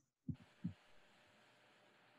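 Two soft, low thumps in quick succession, about a third of a second apart, then near silence with faint room noise.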